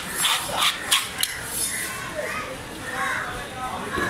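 Background voices at a fish stall, with a few sharp knocks in the first second or so.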